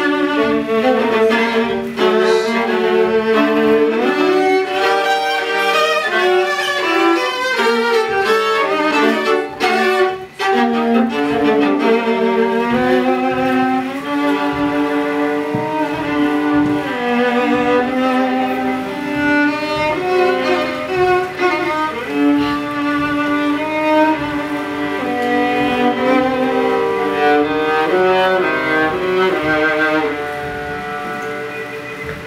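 Two violas playing a duet, both bowed, with interweaving melodic lines; a brief break in the sound about ten seconds in.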